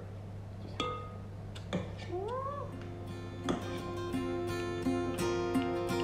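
A metal spoon clinks a few times against a steel mixing bowl and muffin tin while batter is scooped into paper cases. About two seconds in there is a single short cat meow that rises and then falls. Background music comes in at about the halfway point and grows louder.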